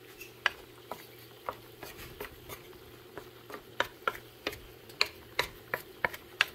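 Wooden spatula stirring fish and leafy greens in a black frying pan: sharp, irregular taps and scrapes of wood on the pan, coming faster in the second half.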